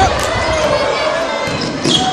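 Basketball dribbled on a hardwood gym floor during play, with a few short knocks, over spectators talking and calling out.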